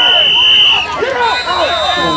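Sideline spectators shouting over one another at a youth football game. Two steady whistle blasts cut through: one in the first second, and a higher-pitched one starting about a second later, typical of referees whistling a play dead after a tackle.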